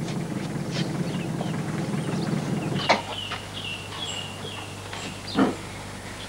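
A steady low rumble that cuts off abruptly about three seconds in. After it, short high bird chirps, a few in a row, over faint outdoor background.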